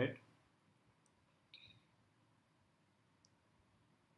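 Near quiet room tone with a few faint clicks; the most distinct is a short click about a second and a half in, with two fainter ticks around it.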